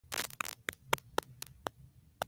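A brief rustle, then a run of light, sharp clicks with a slight ring, about four a second.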